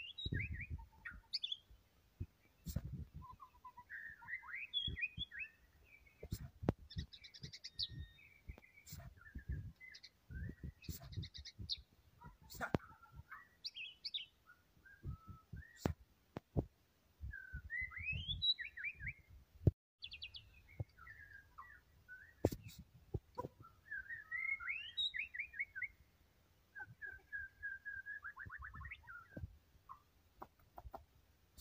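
White-rumped shama singing a long, varied song of quick whistled phrases and rapid trills, with short pauses between phrases. Scattered sharp clicks and low knocks sound throughout.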